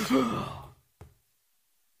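A man's single heavy sigh, a breath out that falls in pitch and lasts under a second.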